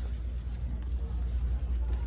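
Shopping cart rolling along a store floor: a steady low rumble.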